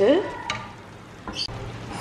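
Wooden spoon stirring onion-tomato masala in a stainless steel kadai, over a soft sizzle of frying, with a light knock about half a second in.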